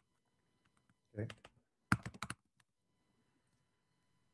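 A short burst of computer keyboard typing: five or six quick clicks within about half a second, a couple of seconds in, heard over a video-call microphone.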